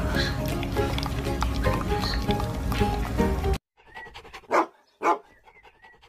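Background music that cuts off suddenly, followed by two short dog barks about half a second apart.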